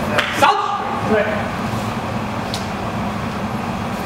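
A man's sharp called count near the start, with a second short vocal sound about a second in, over a steady low hum. A faint click comes about halfway through.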